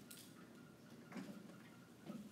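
Near silence: faint room tone with two small ticks, one right at the start and a softer one about a second in.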